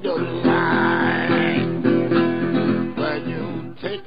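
Country blues guitar break on a steel-bodied resonator guitar: a steady plucked bass pattern under a high melody line that wavers in pitch from about half a second in for about a second.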